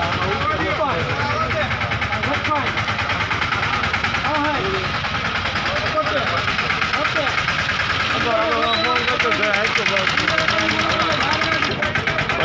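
A truck's diesel engine idling steadily close by, under the chatter of a crowd of men.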